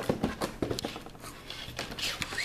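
Shrink-wrapped cardboard box handled and turned over in the hands: plastic film crinkling and light taps, a quick run of irregular clicks, sharpest at the very start.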